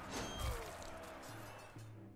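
Online slot game sound: quiet game music with a short impact and a falling tone about a quarter of a second in, as a multiplier wild lands on the reel; the music then thins out toward the end.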